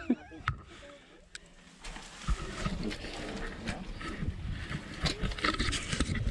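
A person climbing down a steel cable ladder into a narrow dirt sinkhole: scraping and rustling against dry grass and earth, with several sharp knocks scattered through.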